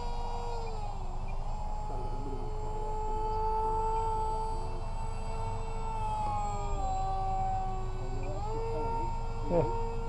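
Electric motor and propeller of a small RC flying wing whining steadily overhead. The pitch drops about a second in, rises again, falls near seven seconds and climbs back up near the end as the throttle is worked. Low wind rumble runs underneath.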